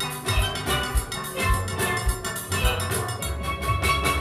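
Full steel band playing steelpans together in a fast Panorama arrangement, backed by a steady drum-kit and percussion beat.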